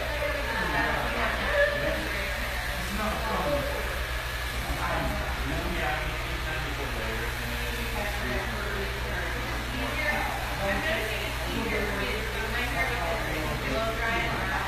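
Indistinct background talking over a steady low hum.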